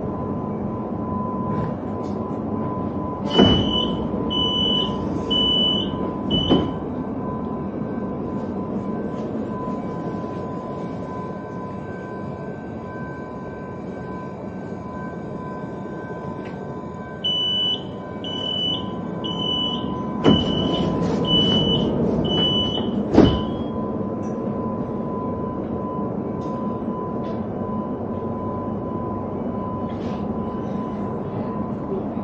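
Sliding doors of a Línea Sarmiento electric commuter train at a station stop: a run of four high warning beeps as the doors open, ending in a thud, then about ten seconds later a longer run of beeps as they close, shutting with two sharp thumps. Under it, the steady hum of the standing train with a thin constant whine.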